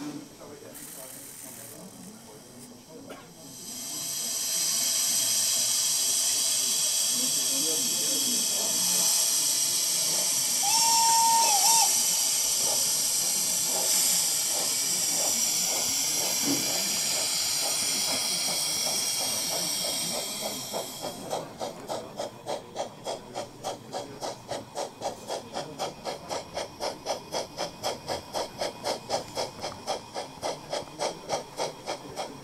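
Sound system of a 1:32 Gauge 1 brass model of a Prussian T 9.3 (class 91.3) tank steam locomotive, played through its onboard loudspeaker: a long loud hiss of steam blowing off starts about four seconds in, with one short whistle blast in the middle. From about two-thirds of the way through, the hiss gives way to steady exhaust chuffs at about two to three a second as the locomotive moves off.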